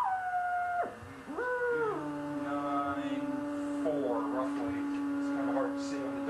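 Vacuum-tube shortwave receiver whistling through its speaker as it is tuned to the test transmitter's signal. A held tone drops away just before a second, then a tone rises, holds briefly and drops at about two seconds onto a steady low tone with overtones.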